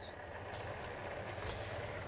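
Steady low rumble of city street traffic, faint and even.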